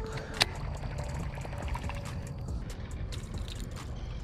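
Water trickling and lapping around a kayak, with one sharp click about half a second in.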